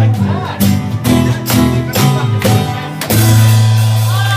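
Live band playing an instrumental passage of a rockabilly number: guitar over bass notes, with drum and cymbal hits about twice a second. A long low bass note comes in about three seconds in.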